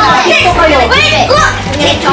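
Excited children and adults talking and calling out over one another, with music playing underneath.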